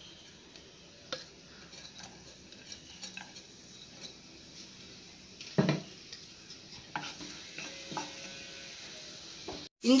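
Chopped ginger and garlic sizzling faintly in oil in a nonstick pan, with a spatula scraping and tapping on the pan now and then and one louder knock about halfway through.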